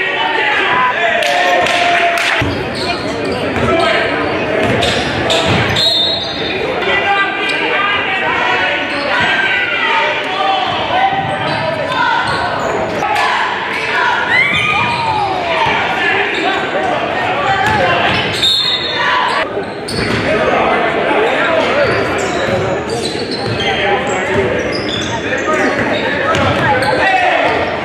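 Basketball game sounds in a gym: a ball bouncing repeatedly on the hardwood court, mixed with shouting voices of players and spectators, all echoing in the large hall.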